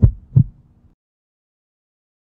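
Outro sound effect under an animated end card: two deep thumps a little under half a second apart over a low steady hum, cutting off just under a second in.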